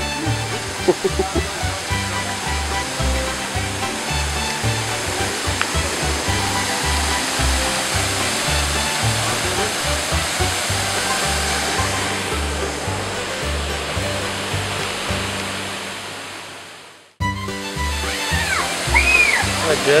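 Rushing water of a tall waterfall pouring off a cliff, under background music with a steady bass line. The rush swells in the middle, fades away shortly before a sudden cut, and then the music returns with a voice.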